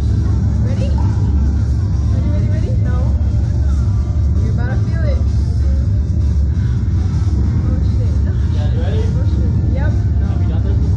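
A steady, loud low rumble, with background music and scattered voices over it.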